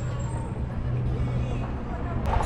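Electric sightseeing shuttle passing close by with a steady low hum, over wind rumble on the microphone from riding an electric scooter. The hum fades out near the end.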